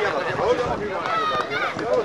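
Overlapping voices chattering and calling out, some of them high-pitched children's voices, with no clear words.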